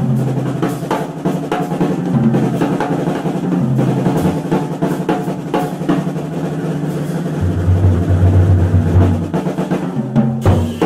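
Live jazz trio of piano, double bass and drum kit playing. The drums are to the fore with many strokes and rolls, over long low double-bass notes.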